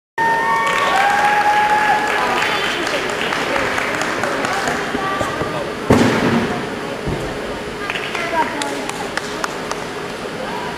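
Voices and calls of people in a gymnasium, with one loud thump just before six seconds in as a gymnast hits the springboard and mounts the uneven bars, followed by scattered light clicks and knocks of the bars as she swings.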